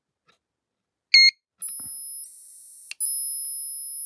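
Rutland ESB202 electric fence energiser powering up when its button contacts are bridged: about a second in, a short loud beep from its circuit-board buzzer, then a steady high-pitched whine from the unit's electronics, broken by a brief hiss and a click near the three-second mark. The sounds show the unit turns on and works with the faulty touch buttons bypassed.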